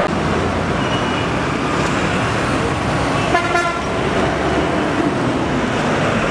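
Busy road traffic running steadily, with a vehicle horn honking once, briefly, about three and a half seconds in.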